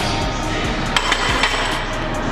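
A steel barbell set back into the squat rack's hooks: one metallic clank with a short ring about a second in, over background music.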